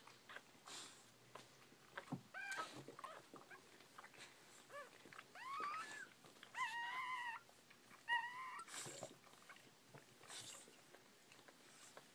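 Newborn bull pei puppies squeaking and whining while nursing: four or five short high cries that bend in pitch, the longest just under a second past the middle, with soft snuffling noises between.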